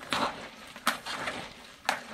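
Hands kneading and squeezing salted shredded cabbage and carrot in a plastic tub: wet crunching and rustling, with sharp crackles about a second in and near the end. The cabbage is being pressed to draw out its juice for sauerkraut.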